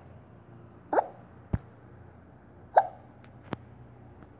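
Short 'bloop' pop sound effects from a tablet colouring app, each a quick upward sweep in pitch, sounding three times at uneven intervals as the screen is tapped. Two sharp clicks fall between them.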